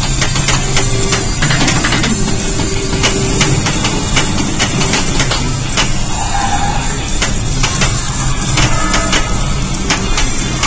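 Batman '66 pinball machine in play: its game music and sound effects over frequent sharp clacks from the flippers and the ball striking targets and bumpers.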